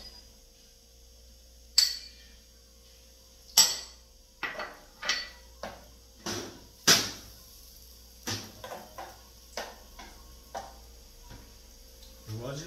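A metal spoon clinking and tapping against a small saucepan as crushed garlic is scraped off into it and stirred: irregular sharp clinks, the loudest about two, three and a half and seven seconds in.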